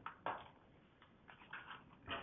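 A few faint, brief rustles and crinkles of a plastic blister pack on a card backing being handled, one a quarter second in and softer ones later.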